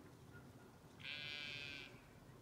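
A Zwartbles sheep bleating once: a single steady call a little under a second long, starting about a second in, over a faint outdoor background.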